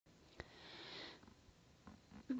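Near silence: room tone, with a faint click and a brief faint hiss of breath just before a second in.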